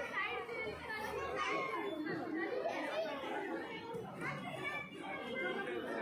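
Children playing and chattering, several voices overlapping.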